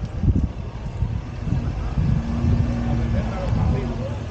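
Outdoor street noise: an uneven low rumble of wind buffeting the microphone, with a steady hum from about two seconds in lasting a second and a half.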